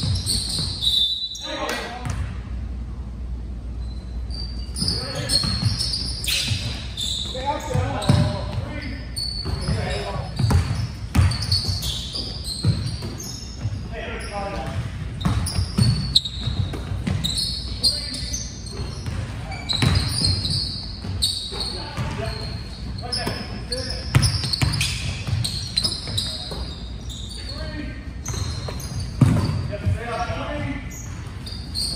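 Basketball game in a large gym: the ball bouncing on the hardwood court in repeated sharp thuds, with players' voices calling out, all echoing in the hall.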